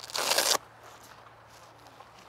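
A boxing glove's hook-and-loop (Velcro) wrist strap being ripped open in one quick tear, about half a second long, right at the start.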